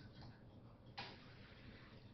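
Near silence: faint room tone with a single sharp click about a second in, a computer mouse button being clicked.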